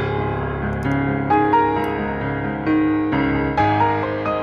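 Background piano music: a slow melody of held notes over a low accompaniment.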